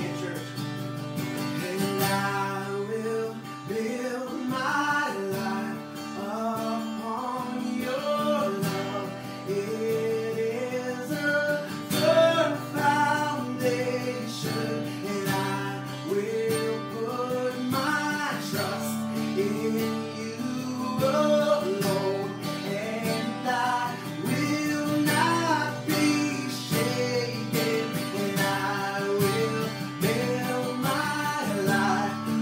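A man singing a worship song, accompanying himself on a strummed acoustic guitar.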